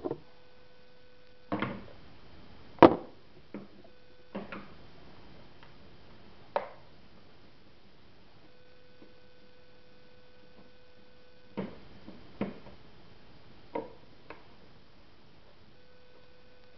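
Scattered knocks and clicks of handling as a camera is set down and a telephone is moved about, the loudest about three seconds in. A faint steady hum comes and goes underneath.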